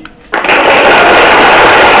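Slide-animation sound effect from presentation software, a loud, steady, noisy rattle starting about a third of a second in as the answer to the blank appears on the slide.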